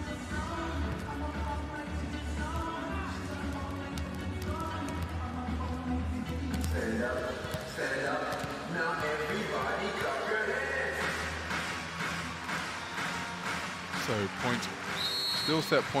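Arena PA music plays in the sports hall during a break in play, with a heavy bass for the first several seconds, over crowd voices. Near the end comes a short, steady high whistle blast, typical of the referee signalling the next serve.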